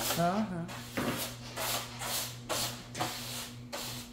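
Broom bristles sweeping a hard wood-look floor: a series of about six brisk, hissing strokes.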